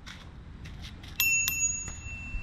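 Small chrome dome bell on a folding bicycle's handlebar struck twice, about a third of a second apart, with the ring lingering for about a second after the second strike.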